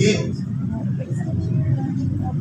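Indistinct, muffled speech over a steady low rumble.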